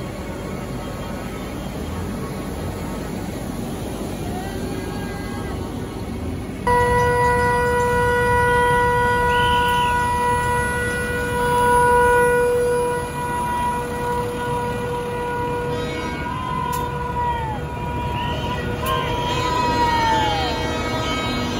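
Steady background noise, then about seven seconds in a vehicle horn sounds one long, steady blast for about nine seconds, followed by shorter horn notes that sag in pitch near the end.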